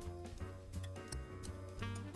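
Quiet background music with held notes and a few light ticks.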